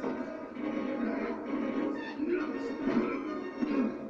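A film soundtrack playing from a tablet's speaker: music with voices.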